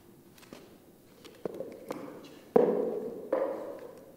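Four sharp knocks, each ringing on briefly as it fades in a large hall, with the loudest a little past halfway. They come from plastic training cones being handled and set out on the floor.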